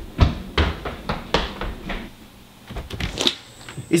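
Quick footsteps on a hardwood floor, a string of sharp steps about three a second, with a short lull around two seconds in before a few more.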